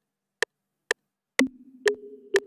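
FL Studio metronome ticking, about two clicks a second, during a recording. About one and a half seconds in, a held low instrument note begins under the clicks, played from the Image-Line Remote app's on-screen piano keys.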